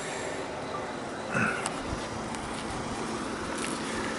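Steady outdoor background noise, much like distant road traffic, with a few faint clicks and a brief faint sound about a second and a half in.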